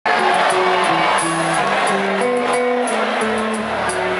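Live rock band playing through the PA of a concert hall, heard from the crowd. A melody moves in steps over drums with regular cymbal hits.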